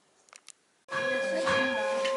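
Near silence with a few faint clicks, then, about a second in, Orthodox church chanting starts abruptly: a steady held drone note with voices moving over it.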